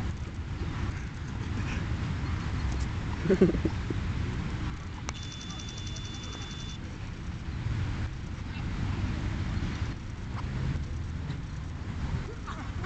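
Outdoor noise on the microphone: a steady low rumble with faint voices, a short shout about three seconds in, and a steady high tone lasting under two seconds near the middle.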